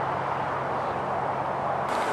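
Steady outdoor vehicle and traffic noise: a rushing hiss over a low, even hum, which changes abruptly near the end.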